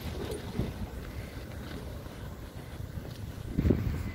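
Wind buffeting the phone's microphone, a steady low rumble, with a brief louder low sound near the end.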